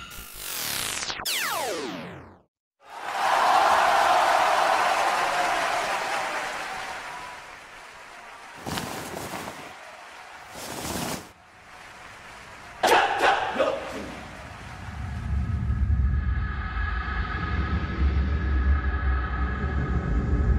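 Dramatic sound effects over a soundtrack: quick falling whooshes, a moment of silence, then a loud noisy surge that fades over several seconds. Two short swishes follow, then a sharp impact with ringing about two-thirds of the way in. Near the end, low rumbling ambient music with sustained tones sets in.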